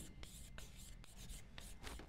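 Chalk writing on a blackboard: faint, irregular short scratches and taps as the letters are stroked out.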